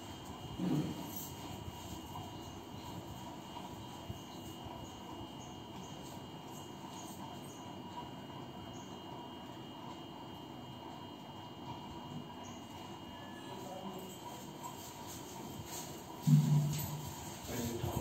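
Quiet room tone with a steady faint hiss and a thin high whine. A brief voice comes about a second in, and a louder voice starts near the end.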